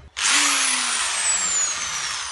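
Handheld electric drill whirring: the sound starts abruptly at full speed, and its high whine then falls steadily in pitch.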